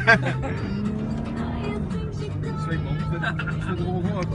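Engine of a four-wheel-drive SUV running steadily, heard from inside the cabin while it drives over sand dunes, with music playing over it.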